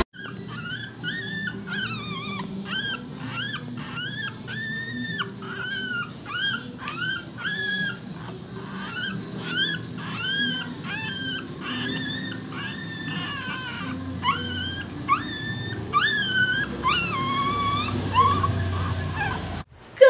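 Three-week-old Shih Tzu puppy whimpering in a run of short high-pitched cries, about two a second, growing louder and shriller near the end.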